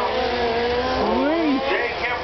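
Several 1/10-scale electric radio-control F1 race cars' motors whining together as they race, their pitch rising and falling as they accelerate and brake, with one whine sweeping up and back down about a second in.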